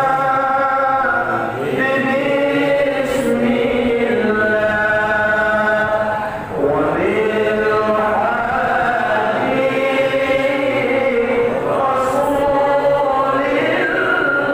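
Sholawat, an Islamic devotional chant in praise of the Prophet Muhammad, sung in long held, wavering notes, with short breaks between phrases.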